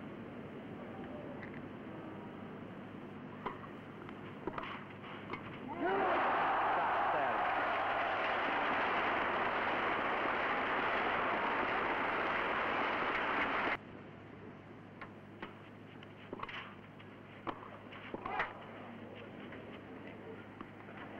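Crowd noise from a packed grandstand at a tennis match. It swells in suddenly about six seconds in and is cut off abruptly about eight seconds later. Around it there is only a low steady hum with a few faint sharp ticks.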